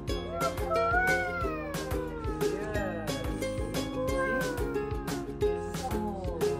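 Background music with a steady beat, with long pitched tones gliding downward over it.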